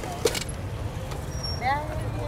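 Street background with a steady low traffic rumble, a single sharp knock about a quarter of a second in, and a short snatch of a voice near the end.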